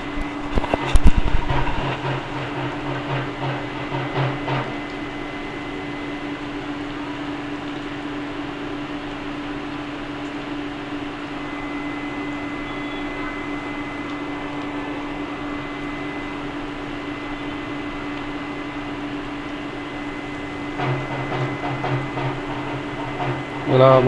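Chopped onions, green chillies and curry leaves frying gently in oil in an aluminium kadai, a low steady sizzle, under a steady mechanical hum. A few knocks sound in the first couple of seconds.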